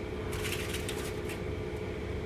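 Faint handling sounds of ham slices being laid into a foil-lined baking pan, light crinkles and taps of the foil, over a steady low hum.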